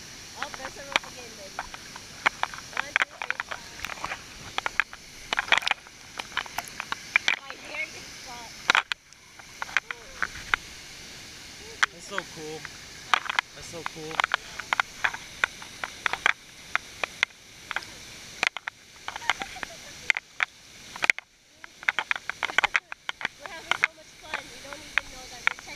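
Water slapping and splashing against a GoPro's waterproof housing held at the surface of a swimming pool below a waterfall: a rapid, irregular run of sharp clicks and taps over the steady rush of the falls.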